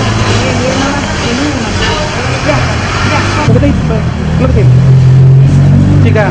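Several people talking at once, words unclear, over a steady low hum that grows louder in the second half.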